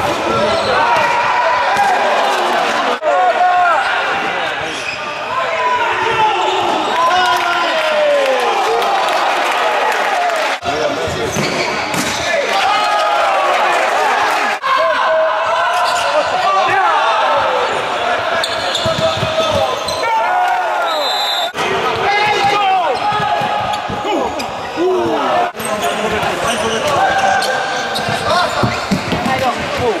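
Futsal play on an indoor wooden court: many short rubber-shoe squeaks sliding up and down in pitch as players turn and stop, with sharp ball kicks and players' shouts.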